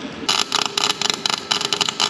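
MIG welding arc crackling in a quick, irregular series of short bursts, starting about a quarter second in. The wire welder is tacking a steel plate onto the spider gears of a rear differential to lock it solid.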